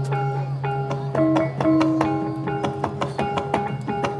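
Balinese gong kebyar gamelan playing: bronze metallophones strike a melody of ringing notes, a few a second, over a deep low tone that fades away in the first second or so.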